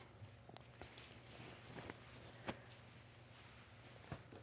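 Near silence: faint rustling and a few light taps as silk lining fabric and paper pattern pieces are handled on a cutting mat, the clearest tap about two and a half seconds in.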